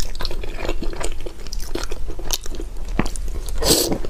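Close-miked eating sounds: wet chewing and mouth clicks, then a louder slurping bite near the end as a soft, syrup-soaked piece of food goes into the mouth.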